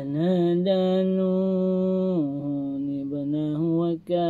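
A man reciting the Quran in a melodic chant. He holds one long drawn-out note, steps down to a lower held note about two seconds in, then ends on a few shorter, wavering phrases.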